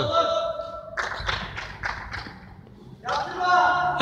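Voices on an indoor five-a-side football pitch, with a few sharp knocks about a second in, echoing in a large dome hall.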